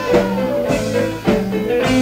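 Progressive rock band playing live: guitar, bass and drum kit, with drum hits coming about twice a second.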